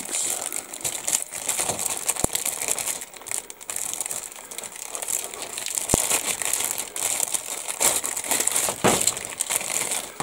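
Clear polythene kit bag crinkling and rustling continuously as hands work it open around a grey plastic model-kit sprue, with two brief clicks in the middle.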